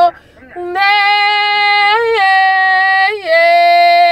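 A woman singing unaccompanied in long held notes on wordless syllables. She breaks briefly for breath just after the start, then holds a note that steps up briefly around the middle and settles lower near the end.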